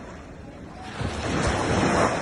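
Small surf waves breaking and washing up onto a beach. The rush of a breaking wave swells about a second in and is loudest near the end.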